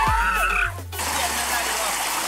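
Music with a wavering high melody for about the first second, cut off abruptly, then a steady rush of water gushing out of a pipe outlet onto grass.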